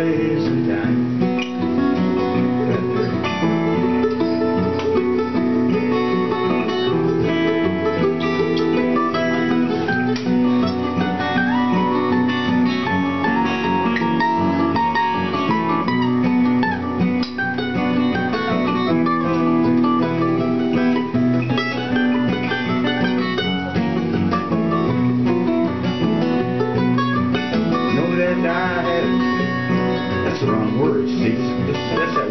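Instrumental break of a folksy song in G, played live on strummed acoustic guitars and a mandolin, steady chords under a picked melodic line.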